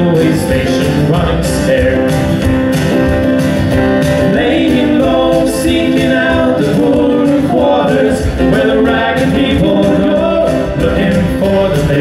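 Two male voices singing together over strummed acoustic guitars and a steady beat on a hand-played box drum (cajón).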